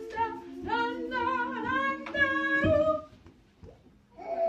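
A group of women singing a song together, unaccompanied, stopping about three seconds in.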